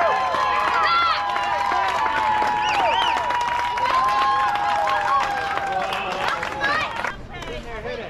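Crowd of young players and spectators shouting and cheering, many voices overlapping with long held calls; it cuts off abruptly near the end.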